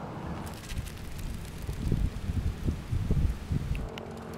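Wind buffeting the microphone in uneven low gusts, with a faint rustle of dry grass.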